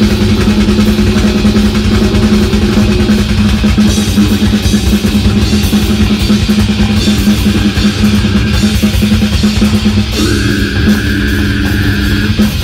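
A heavy metal band playing live at full volume: electric guitars over a dense drum kit with pounding bass drum. A high held guitar note comes in about ten seconds in.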